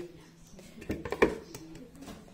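Plastic salad spinner basket set down into its clear plastic bowl: a few light knocks and clicks about a second in.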